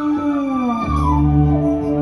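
Live band music between sung lines: a held note with a slow downward gliding pitch over it, then a deep bass note comes in about a second in.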